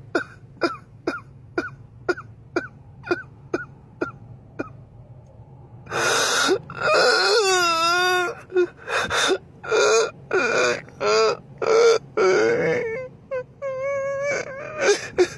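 A man crying: quick short sobs, about two a second, for the first few seconds. After a brief lull he breaks into loud, drawn-out wailing cries with a wavering pitch, broken up by more sobs.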